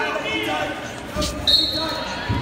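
Spectators' voices and chatter echoing in a gym, with dull thumps of wrestlers' bodies on the mat. About one and a half seconds in, a short high whistle blast sounds for about half a second.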